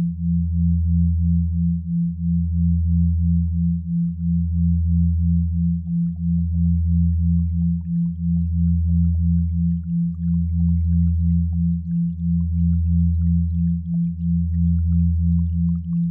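Synthetic isochronic sound-therapy tones: a low pure hum that breaks briefly every two seconds, under a higher pure tone pulsing on and off a few times a second.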